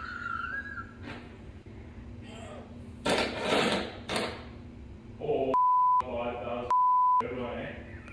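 Two censor bleeps, each a steady high beep of about half a second, a second apart, blanking out words in the clip's audio. Before them, about three seconds in, comes a short rough noisy burst amid low voices.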